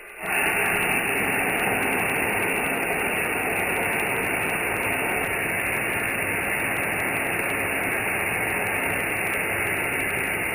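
Compressed-air blowgun blowing a steady hiss into a rusted car rocker panel, blasting out 50 years of dirt and debris. The blast starts just after the beginning and holds at an even level.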